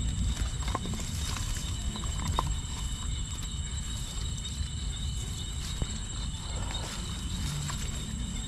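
Wire-mesh fish trap rustling and rattling as it is handled and the catch is worked out of it, with a few sharp clicks and knocks. A steady high-pitched insect trill runs underneath.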